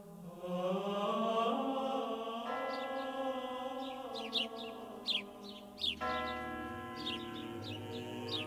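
Soundtrack choral chant: sustained sung chords that shift twice, with a low bass note coming in about six seconds in. Brief high chirps are heard over it.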